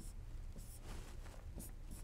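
Faint scratching of a stylus writing on a tablet, in a few short strokes, over a low steady hum.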